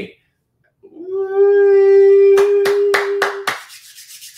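A man's long, steady high-pitched vocal cry as he laughs, held for about two and a half seconds, with about five sharp hand claps in quick succession near its end.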